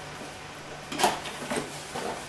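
Cardboard motherboard box being opened by hand: a short scrape as the flip-top lid comes free about a second in, then a softer rustle, over a low steady hum.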